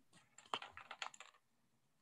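A short run of faint computer-keyboard clicks, heard through a video-call microphone, from about half a second to just over a second in.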